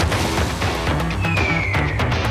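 Energetic background music with a steady beat. A sharp hit sounds at the start, then a cartoon falling whistle, one descending tone in the second half, for a struck drone dropping from the sky.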